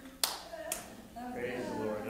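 Two sharp taps about half a second apart, the first one louder, followed by a man's low voice.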